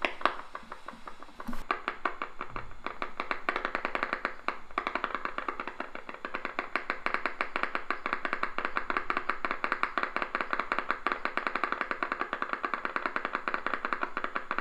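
EMG machine loudspeaker giving out the motor unit discharges picked up by a concentric needle electrode in the tibialis anterior muscle during a steady voluntary contraction. It is a rapid, regular train of sharp clicks that is softer for the first couple of seconds, then steady.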